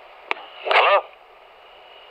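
A single click on a telephone line, as when switching over to a waiting call, followed by a man's short rising 'Hello?' over faint, steady line hiss.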